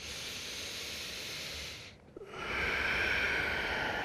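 A man's deep breath close to a headset microphone: an inhale of about two seconds, then, after a brief pause, a longer and louder exhale.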